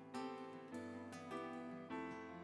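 A live band playing an instrumental passage: a quick run of picked and keyboard notes over held bass notes.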